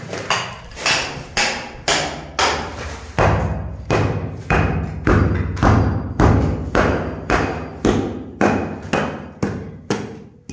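Long-handled hammer striking and breaking up concrete at the base of a wall, in a steady rhythm of about two blows a second.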